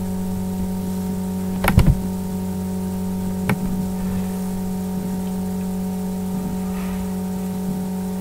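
Steady electrical mains hum on the recording, with a sharp click about two seconds in and a fainter one about a second and a half later.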